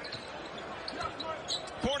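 Basketball being dribbled on an arena's hardwood court, over a steady hum of crowd noise.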